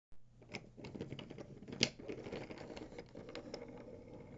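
Wooden toy train engine pushed by hand along wooden railway track: its wheels roll with a run of irregular clicks and clacks, the loudest a little before the two-second mark.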